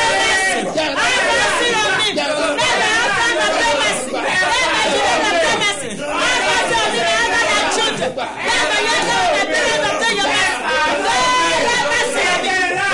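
A man praying aloud fervently without pause, with other voices overlapping in a continuous babble of prayer.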